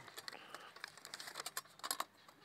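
Faint, irregular light clicks and taps from a small folding steel camp stove being handled and folded out.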